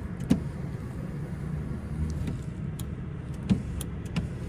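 Power rear sliding window of a pickup cab running on its electric motor, a steady low hum, with a few short clicks from the overhead switch and window.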